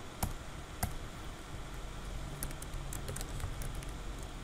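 Computer keyboard keystrokes while code is typed: a few separate clicks, two louder ones in the first second and a small cluster a little past halfway, over steady low background noise.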